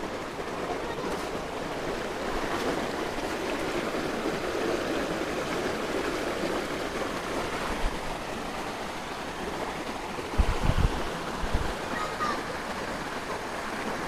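Shallow stream water flowing over rocks in a steady rush, with a few low thumps about three-quarters of the way through.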